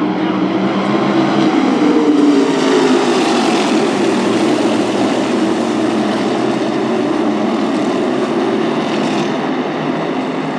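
A pack of NASCAR modified race cars at full throttle after a restart, their engines blending into one loud, continuous din that swells as the field goes past a couple of seconds in.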